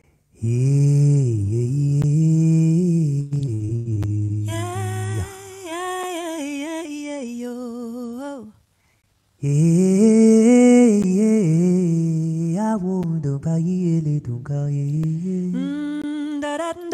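Unaccompanied wordless singing, close to humming, in a slow melody over a video call. It comes in two long phrases with a short break about eight and a half seconds in. A low voice starts it, and a higher voice comes in about five seconds in.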